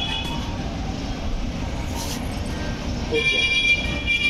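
Street traffic rumbling steadily, with a long high tone such as a vehicle horn starting about three seconds in.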